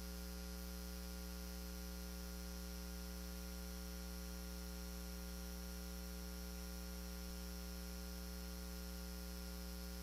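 Steady low electrical hum with a buzzy stack of overtones and a faint hiss underneath, unchanging throughout.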